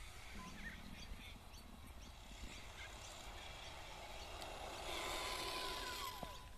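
Faint hiss of a brushless-motored RC buggy driving over asphalt toward the camera, growing louder as it approaches. A steady high whine from its motor and gears sets in near the end. Low wind rumble runs underneath.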